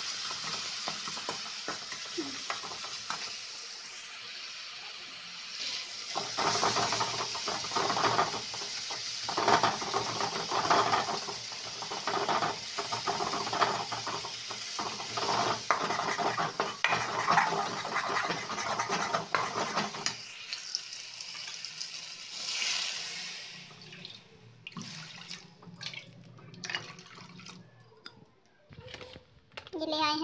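Tomatoes cooking in an aluminium kadhai, stirred and scraped with a spoon against the metal pan over a steady hiss. Water goes into the pan about three-quarters through, and after that only scattered clinks and taps are left.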